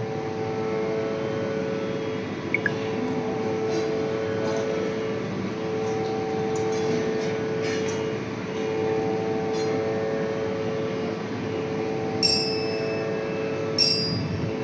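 A steady instrumental drone on one held pitch, with a few higher tones coming and going over it. Two short metallic rings sound near the end.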